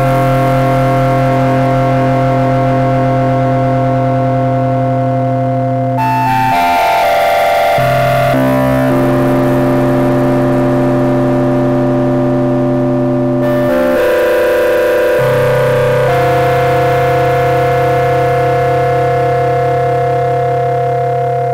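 Yamaha CS-50 eight-voice analog polyphonic synthesizer playing long, steady held chords that change a few times, with a short run of stepping pitches about six seconds in.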